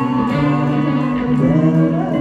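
Live rock band playing, heard from within the audience: steady held bass notes under guitar and a gliding melody line.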